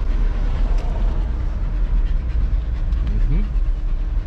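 Steady low rumble of a Ford Fiesta's engine and tyres heard from inside the cabin as it drives slowly along an unpaved sandy road. A short "mm-hmm" comes near the end.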